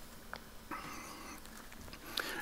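Quiet pause with a few faint clicks, then a soft, short breath-like rush about a second in, picked up by a headset microphone while a drinking glass is set down.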